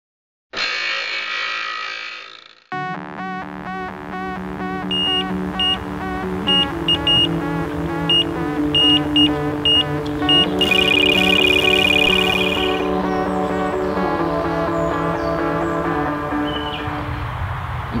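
A swishing sound effect lasting about two seconds, then intro music with sustained chords and a repeating pattern of notes. Short high beeps join in, and a sustained high buzzing tone runs for about two seconds in the middle.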